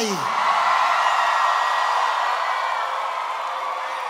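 Concert crowd cheering and screaming, easing off slightly over the seconds.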